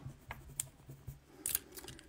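Faint clicks and light scratching of small makeup items being handled close to the microphone, with a small cluster of clicks near the end.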